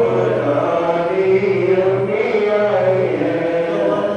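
Devotional chanting by several voices together, a steady sung chant with no break.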